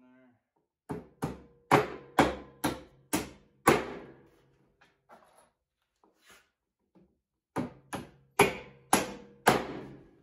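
Hammer knocking bolts down through tight holes in a wooden flatbed deck and its steel angle-iron frame: seven sharp strikes, a pause of about four seconds, then five more, each with a short metallic ring.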